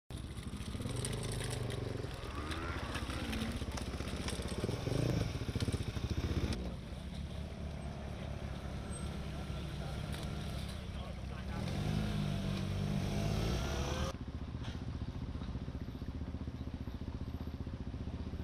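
Street ambience of people talking and motorcycle engines running, with a steady low hum. The background changes abruptly twice, about six and a half seconds and fourteen seconds in.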